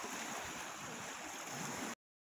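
A steady outdoor rush of open-air noise picked up by a phone microphone, cutting off suddenly near the end.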